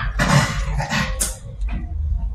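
A man's breathy laughter: a few short, noisy bursts in the first second or so, then quieter.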